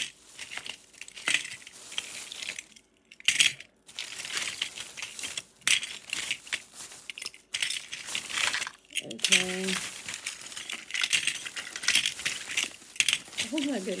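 Metal pinback buttons clinking and clattering as handfuls are picked from a plastic bag and dropped onto a pile of other buttons, in irregular bursts with short pauses, the bag crinkling as the hand works in it.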